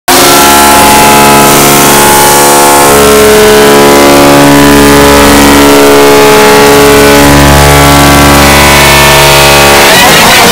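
Loud, heavily distorted sustained drone made of many steady stacked tones, with a low buzz that switches on and off in stretches of about a second. It cuts off sharply at the end.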